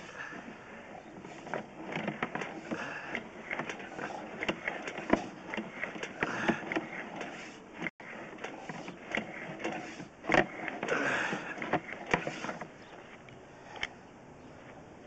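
Drain inspection camera's push-rod cable being fed down a sewer pipe: irregular clicking, rattling and scraping, with a few louder knocks.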